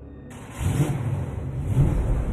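Car engine revving hard, swelling twice about a second apart, from a sudden loud start.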